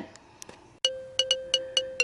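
A short chime jingle begins about a second in: a quick run of bright, ringing pings over a held tone.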